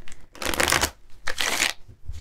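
A tarot deck being shuffled by hand: two quick bursts of cards flicking against each other, about a second apart.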